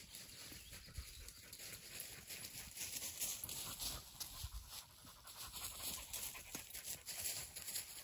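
A dog panting close by.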